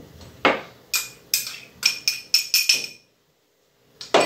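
A spoon tapped repeatedly on the rim of a glass mixing bowl: a single knock, then about eight quick clinks, each ringing with the same clear tone. About three seconds in, the sound cuts out abruptly.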